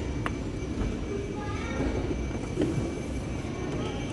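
Inclined moving walkway running with a steady low rumble, with a few light clicks and faint voices in the background.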